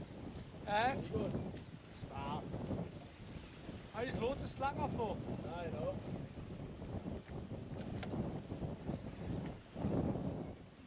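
Wind buffeting the microphone over a steady background of sea and open air, with a few short, indistinct voices through it, mostly in the first half.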